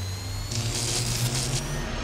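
Sound effects for an animated logo reveal: a low steady hum under a hiss that swells about half a second in, with faint rising whistles at the start.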